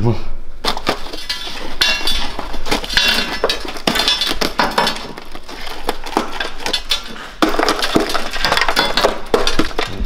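Rusted-through sheet metal of a Mercedes W220 S-Class sill being pulled and broken away by a gloved hand: an irregular run of cracking, crunching and clinking as flakes of corroded steel snap off. The sill is rotted through with rust.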